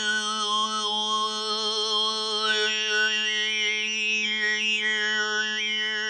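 Mongolian folk song in overtone singing (khöömei): one steady low drone is held throughout, and a high, whistle-like melody of overtones glides up and down above it.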